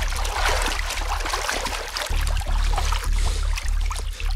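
Sea surf washing and splashing, with many short splashes over a steady deep rumble.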